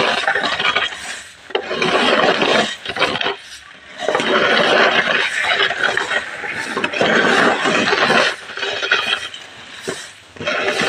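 Dried corn kernels being swept and raked across a concrete floor: repeated rasping, rattling strokes a second or more long, with short pauses between them.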